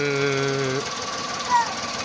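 Volkswagen Polo 1.2 12V three-cylinder engine idling with a fast, even rhythm and a brief high chirp about one and a half seconds in. The owner complains of a shake in the engine that a tune-up and spark-plug cleaning have not cured.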